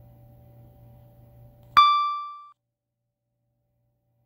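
A single electronic chime, a clear ringing tone with overtones, sounds a little under two seconds in and dies away within about a second. Before it there is a faint steady low hum, and the audio cuts to dead silence after the chime fades.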